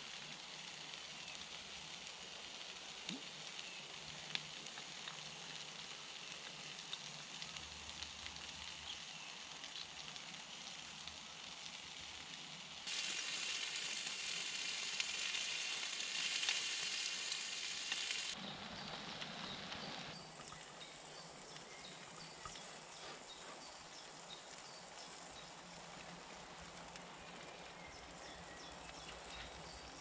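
Pork medallions frying in a small pan over a little wood fire, with a steady sizzling hiss that swells much louder for about five seconds in the middle.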